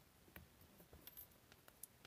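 Near silence broken by a few faint, short clicks and taps: small plastic and metal parts of a disposable electrosurgery pen being handled as its circuit board is taken out of the housing.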